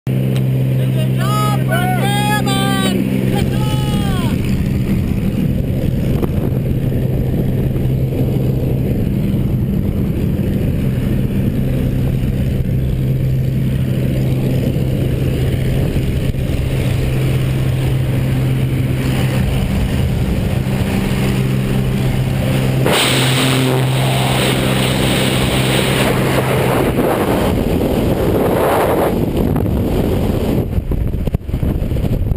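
Small single-engine jump plane's engine droning steadily inside the cabin, with brief voices in the first few seconds. About 23 s in, a loud rush of air noise joins it, and near the end the engine drone drops away into wind as the skydivers leave the plane.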